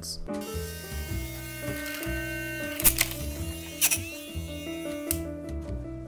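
A small DC motor spinning a plastic propeller, buzzing steadily from just after the start until about five seconds in, with two sharp clicks near the middle, over jazz piano background music.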